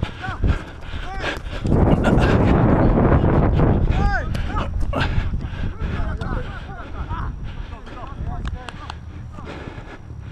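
Wind and movement rumble on a head-worn action camera's microphone, loudest from about two to five seconds in, with knocks of footfalls on grass. Players shout in the distance throughout.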